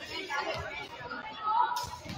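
Indistinct chatter of several voices echoing in a large gymnasium, with basketballs bouncing on the hardwood floor. The sharpest thump comes near the end.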